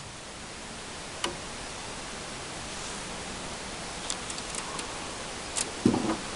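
Steady even hiss with a single sharp click about a second in, a few light clicks later, and a stronger low knock near the end, from a caught fish and tackle being handled in an aluminium jon boat.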